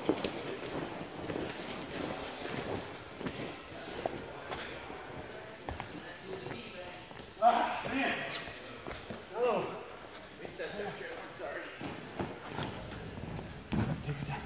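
Indistinct voices talking in a large gym hall, mixed with scattered footsteps and light knocks. The voices are loudest about halfway through.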